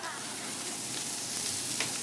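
Steady sizzle of food frying on a hot kitchen griddle, with a single light click just before the end.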